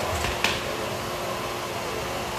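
Shop dust collector running steadily, air rushing through its flexible hose, with a faint steady hum. A short knock comes about half a second in as the hose is handled at the band saw.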